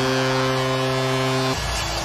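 Hockey arena goal horn sounding one long steady low note after a home-team goal, cut off abruptly about a second and a half in.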